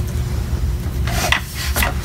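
Latex modelling balloons handled with gloved hands: a few short rubbing squeaks about a second in and again near the end, over a steady low hum.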